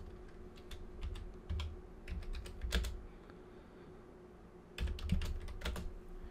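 Typing on a computer keyboard: a run of keystrokes for about three seconds, a pause, then a few more keystrokes near the end.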